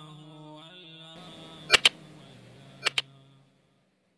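Background music of held, chant-like tones that fades out about three and a half seconds in. Over it come two pairs of sharp mouse-click sound effects about a second apart, from a subscribe-button animation.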